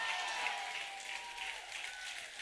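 Audience applauding, with a faint held note underneath that fades out in the first second and a half.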